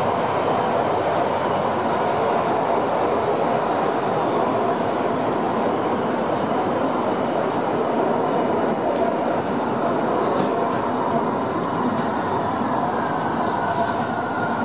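Perce-Neige underground funicular car descending at its full speed of 12 m/s through its tunnel, heard from inside the driver's cab: a loud, steady rolling rumble of the car on its rails. Near the end a faint whine comes in, falling slightly in pitch.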